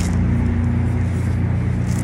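Road traffic: a steady low engine hum that does not rise or fall.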